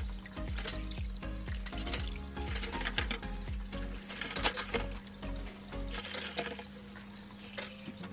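Kitchen tap running into a stainless steel sink and plastic basin as gloved hands rinse under it, with a few sharp splashes or clatters midway, over background music.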